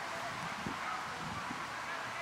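Distant voices of people shouting and calling across an open football pitch, broken and faint over a steady hiss, with a few low thumps.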